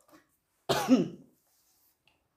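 A single cough from a woman, about two-thirds of a second in and lasting about half a second.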